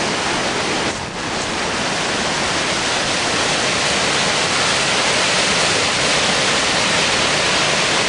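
Brook in flood, at the highest it has been seen, running fast and pouring over a small waterfall: a loud, steady rush of water.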